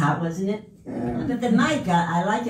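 A woman's voice into a handheld microphone, speaking or vocalizing with a strongly rising and falling pitch, broken by a short pause about half a second in; no clear words come through.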